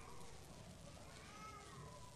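Near silence in a large room, broken by one faint, high-pitched vocal call that rises and then falls in pitch, lasting about a second and a half.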